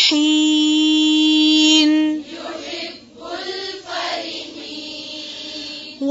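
A woman's voice reciting the Quran holds one long, steady chanted note for about two seconds: the drawn-out final vowel at the end of a verse. It then drops to soft, breathy sounds.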